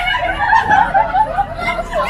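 A group of women laughing and talking at once, high-pitched giggles and chuckles in quick repeated bursts.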